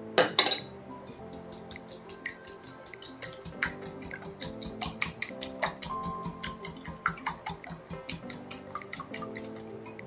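Wire balloon whisk beating an egg and melted-butter mixture in a glass bowl, its wires clicking against the glass several times a second, with a louder clink at the very start. Background music plays underneath.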